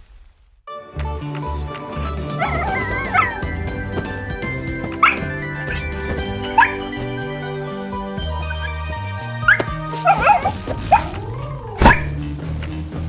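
Cartoon background music with a steady bass line begins after a brief silence. Over it, an animated puppy gives several short barks spread through the scene, and a sharp thump comes near the end.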